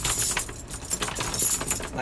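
A ring of metal keys jangling and clicking against a front-door lock as a key is worked in it, a rapid, irregular jingle throughout.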